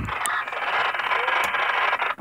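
Radio receiver static: a steady hiss from the set's speaker that cuts off suddenly, as a squelch closing would.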